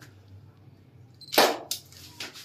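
A single sharp snap about one and a half seconds in, followed by a fainter click.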